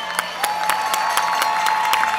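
Audience applauding and cheering after a live bluegrass song, with a long, high, steady whistle held from about half a second in.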